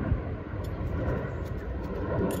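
A few faint metallic clicks of a hex Allen key turning in a stainless steel socket cap screw, over a steady low outdoor rumble.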